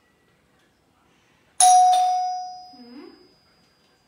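Doorbell chime ringing: a sudden bright ding struck twice in quick succession about a second and a half in, then ringing out over about a second, with a faint high tone lingering.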